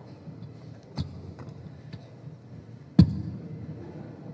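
Low murmur of a room full of people, broken by two sharp knocks about two seconds apart, the second louder and ringing on briefly.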